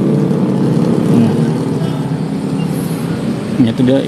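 Diesel engine of a standing passenger train idling steadily, a low hum.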